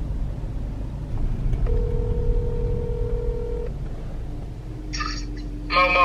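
Phone ringback tone heard through the phone's speaker: one steady ring lasting about two seconds, over the low rumble of the car.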